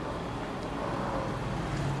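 Steady background noise in a pause in speech: an even hiss with a low hum, with no distinct sound standing out.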